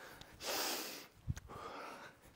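A man's breathing during an arm stretch: a strong breath about half a second in, a small click, then a softer breath near the end.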